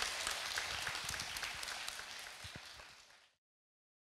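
Audience applauding, the clapping fading and then cut off suddenly a little over three seconds in.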